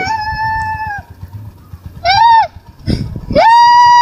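A woman wailing in high, drawn-out cries: one held cry of about a second, a short rising-and-falling one, then a louder long cry near the end.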